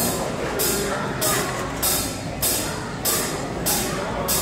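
Drummer tapping a steady count-in on the hi-hat, one crisp stroke about every 0.6 seconds.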